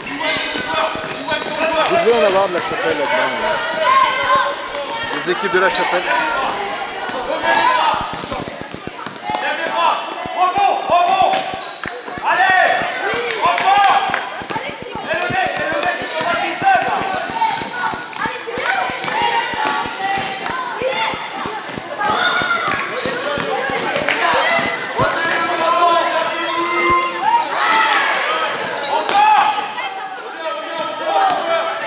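A basketball being dribbled and bounced on a gym floor, in repeated knocks, over voices of players and coaches calling and shouting throughout.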